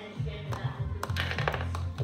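Background music with a bass line, over several light taps of plastic toy horse figurines knocking on a hard floor, most of them between one and two seconds in.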